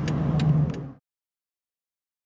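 Steady low hum inside the cabin of a 2009 Mercedes-Benz S600, its twin-turbo V12 running, with one light click. It cuts off suddenly about a second in.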